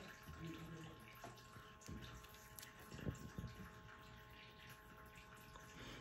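Near silence: faint room noise with a steady hum and a few soft knocks about two and three seconds in.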